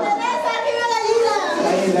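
Several high, excited voices calling out and talking over one another in a lively group.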